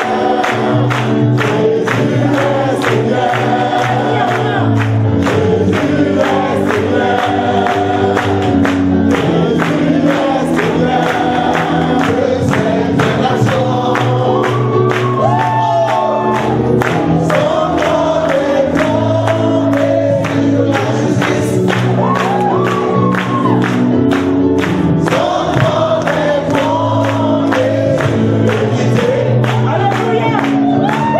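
Gospel worship music: a choir singing over a band with steady bass and a regular drum beat.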